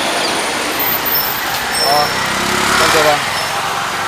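Steady road traffic noise from a busy street, with a voice briefly heard around the middle.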